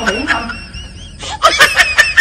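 Person snickering and giggling in short, high-pitched bursts.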